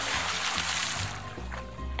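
A splash of water, a hissing spray that fades out over about a second and a half, over light background music.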